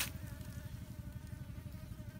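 A flying insect buzzing: one steady thin whine whose pitch wavers slightly, over a constant low rumble.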